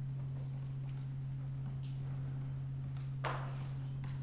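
Computer keyboard typing: scattered faint key clicks with one louder, sharper click about three seconds in, over a steady low electrical hum.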